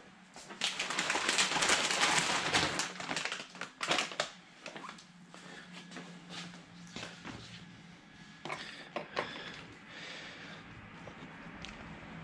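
Hands handling an RC truck wheel and parts: a rustling, crinkling stretch over the first few seconds, then scattered clicks and light knocks, over a faint steady hum.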